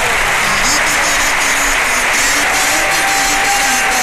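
Theatre audience applauding steadily.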